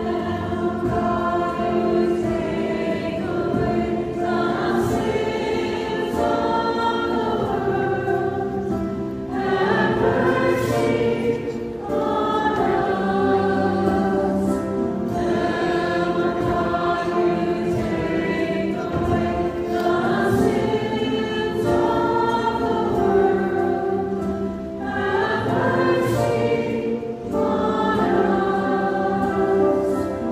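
A church choir of adults and children singing a hymn, phrase after phrase without a break.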